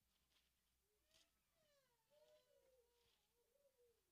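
Near silence: room tone, with faint wavering whimpers in the background.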